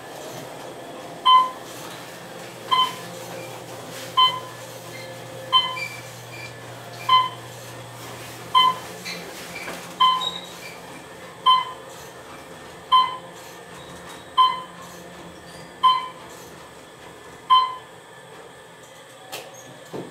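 Short electronic beep from an Otis elevator car, repeating evenly about every second and a half, thirteen times, as the car travels down. A low steady hum runs under the first half.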